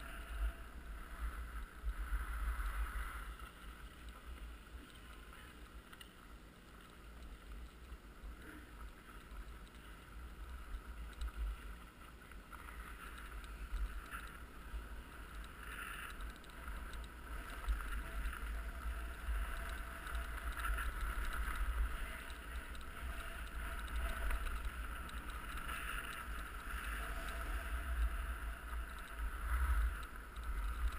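Sliding down a firm, hard-packed ski run: a continuous scraping hiss of the board or skis on the snow that swells and fades with each turn. A heavy low wind rumble on the microphone runs under it.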